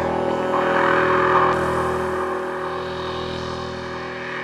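ASM Hydrasynth Desktop playing a held ambient pad chord from its pads. A breathy noise layer swells during the first second and a half, then the sound slowly fades.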